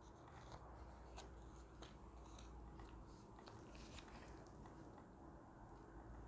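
Near silence: a few faint, scattered clicks and crinkles of a paper tea sachet and envelope being handled.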